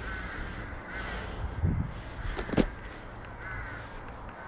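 Electric mountainboard rolling over a dirt forest trail: a steady low rumble of the wheels and wind on the camera, with sharp knocks about halfway through as the board goes over bumps. A bird's short harsh calls repeat about once a second near the start and again near the end.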